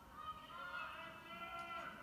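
A faint, drawn-out, high-pitched shout from a person's voice, lasting well over a second and bending slightly in pitch.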